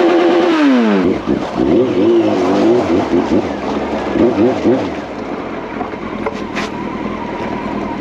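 Honda CB900F's inline-four engine revving up and down as the motorcycle is ridden at low speed. Its pitch rises and falls several times in the first five seconds, then settles lower and steadier.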